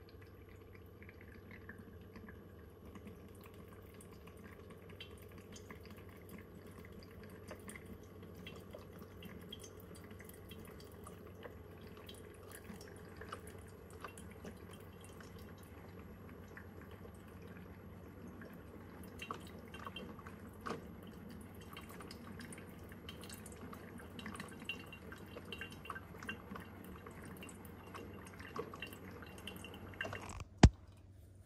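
Keurig K-Duo coffee maker brewing into its glass carafe: faint dripping and trickling of coffee into the carafe over a steady low hum. The drips grow more frequent in the second half.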